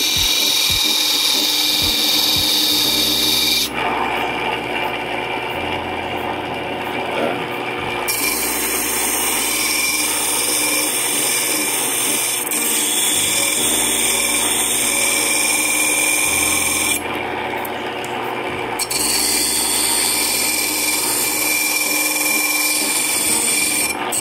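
Grinding wheel running with a steel cuticle nipper pressed against it freehand, a steady rasping hiss of metal on the stone over the motor's hum as the corners of the jaws are ground off. The high hiss drops back for a few seconds about four seconds in and again briefly near seventeen seconds as the contact changes.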